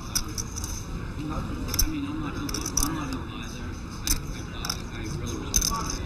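Clay poker chips clicking together in short, sharp, irregular clicks, as a player handles his chip stack at the table.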